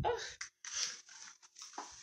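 A short exclamation, then several dry rustling, scraping scuffs of handling noise close to the microphone as someone moves and reaches down.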